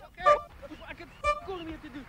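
Men's voices talking and calling out in short, bending phrases, fainter than the narration around them.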